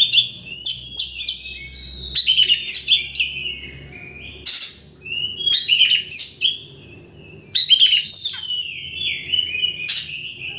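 Oriental magpie-robin singing loudly in varied bursts of rising and falling whistles mixed with harsh notes, with a quieter gap about seven seconds in. It is the excited, aggressive song used as a lure to rile other magpie-robins.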